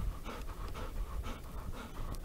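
Golden retriever panting quickly and evenly, several breaths a second, after running to retrieve a ball.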